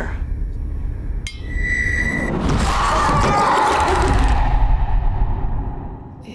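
Horror-trailer sound design: a low rumble, then a sudden hit about a second in with a short high ringing tone. A rushing noise follows, swelling to a peak near the five-second mark and then dying away.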